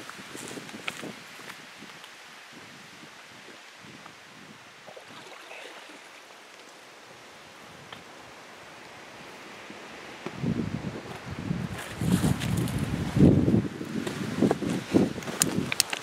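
Light wind in the open for the first ten seconds, then gusts buffeting the microphone in low rumbling bursts. A few sharp clicks come near the end.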